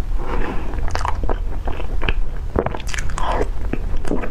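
Close-miked mouth sounds of eating soft cream cake: chewing with irregular short, sharp wet clicks and smacks.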